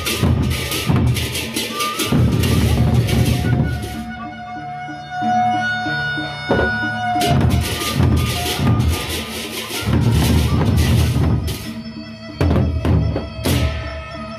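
Sasak gendang beleq ensemble playing: large double-headed barrel drums beaten in a driving rhythm under several loud bursts of crashing hand cymbals. A quieter stretch comes in the middle, where a held melodic tone stands out.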